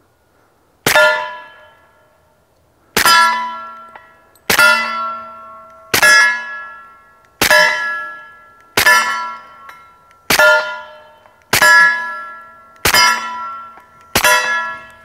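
Suppressed .45 ACP pistol (S&W M&P 45 with an AAC suppressor) fired nine times at a slow, steady pace, about one and a half seconds apart. Each shot is followed by the ring of a hit steel plate target that fades over about a second.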